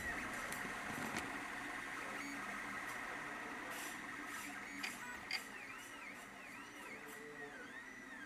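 A desktop 3D printer's stepper motors whine as the print head moves, the pitch rising and falling in quick repeated arcs. There are two sharp clicks about five seconds in.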